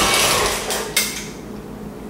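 KitchenAid stand mixer running with cookie dough, its motor noise dying away about half a second in as it is stopped, then a single sharp metallic click about a second in.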